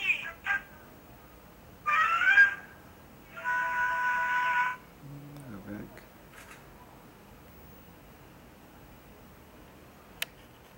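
A cartoon's soundtrack playing through a clone phone's small loudspeaker, thin and tinny. High-pitched character voices come at the start and again about two seconds in, followed by a steady tone lasting over a second. After about six seconds it goes almost quiet.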